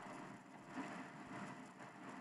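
Faint steady background noise with a little hum, coming through the open microphones of a video call.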